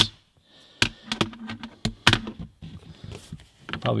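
A few irregular small metal clicks and knocks as a manual sunroof crank is handled and screwed into the sunroof motor of a 1989 Porsche 911 Carrera 964.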